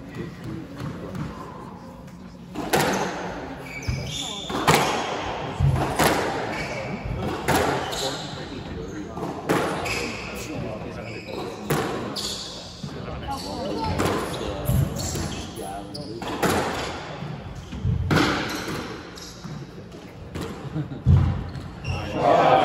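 A squash rally: the rubber ball cracking off the rackets and the court walls about once a second, with sneakers squeaking on the hardwood floor. The hits start about three seconds in and stop near the end.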